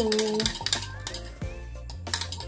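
Background music with a steady beat and a bass line.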